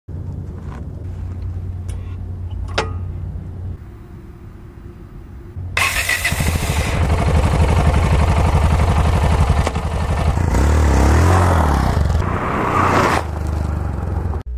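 Yamaha XT660Z Ténéré's single-cylinder engine running: a quieter low hum at first, then much louder from about six seconds in with a fast, even pulsing beat, and revs rising and falling near the end.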